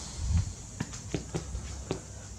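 About five light, irregular footsteps on a concrete floor, over a faint low hum.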